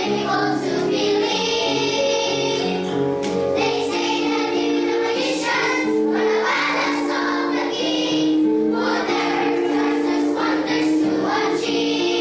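Children's choir singing, with long held notes.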